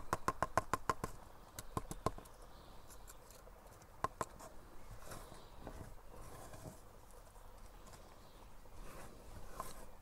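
Small plastic plant pot of freshly added orchid potting mix being tapped to settle the substrate. A quick run of light taps, about eight a second, fills the first second, a few more come around two seconds in and two near four seconds, then only faint handling noise.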